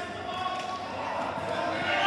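Indistinct voices of players and spectators shouting, echoing in a large indoor sports hall and growing louder as the play runs.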